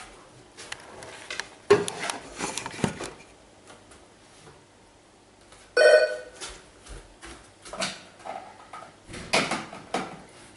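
An intercom door buzzer sounds once for about half a second, midway through; it is the loudest sound here. Knocks and clatter of someone moving about come before it, and handling noise at the door lock comes near the end.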